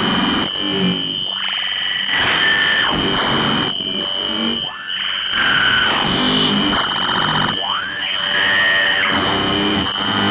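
Electronic noise music: a steady, high, whining tone held almost throughout, briefly dropping out a little before five seconds in, under distorted, effects-processed washes of noise and gliding pitches that swell and fade every second or two.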